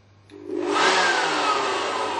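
Small handheld corded electric blower starting up with a rush of air about a third of a second in, then its motor whine falling steadily in pitch and the sound slowly dropping as it winds down.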